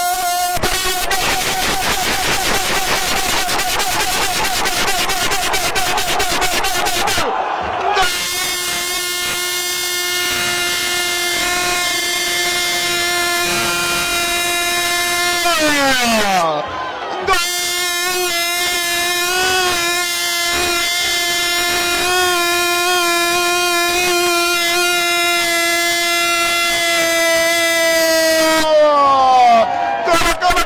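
Loud steady electronic buzz from a broadcast signal fault in place of the radio commentary. It cuts out briefly about seven seconds in, then sags downward in pitch around halfway and again at the end.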